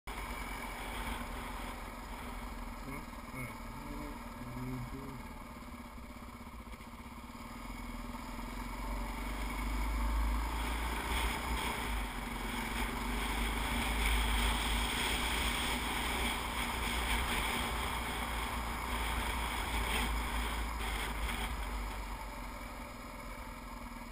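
Dirt bike's engine running while riding, with wind rumbling on the camera's microphone. The noise swells about a third of the way in as the bike speeds up and eases off near the end as it slows.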